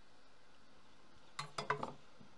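Metal tweezers being set down on the workbench: a short run of sharp metallic clinks and clatters about a second and a half in, against faint room tone.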